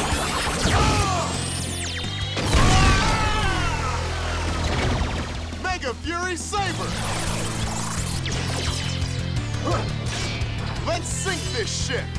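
Action-show soundtrack music with a steady bass line, layered with sweeping sci-fi whooshes and crash effects, and brief shouted or sung voices.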